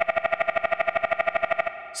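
Xfer Serum software synth playing a woodpecker-pecking patch with its reverb filter switched off. A steady pitched tone is chopped by a very fast LFO into rapid even pulses, about fourteen a second, which blur together near the end; it sounds plain and not very exciting without the filter.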